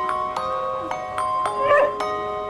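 Light background music of bell-like mallet notes struck about every half second. A dog gives one short, high, wavering cry near the end, the loudest sound.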